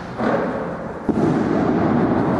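A dull thump about a second in, amid a dense rumbling noise.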